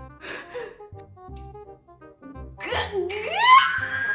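Light background music of short, steady notes; about three seconds in, a girl's excited shriek slides up in pitch and is held high.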